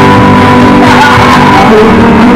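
A live acoustic band playing loudly: strummed acoustic guitars and bass under a man's voice singing into a microphone.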